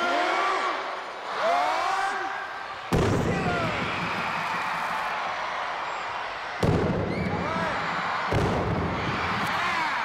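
Three loud bangs, about three, six and a half and eight seconds in, as plastic bottles of liquid nitrogen burst under upturned trash cans and blast them upward. Each bang rings on in a large, echoing arena.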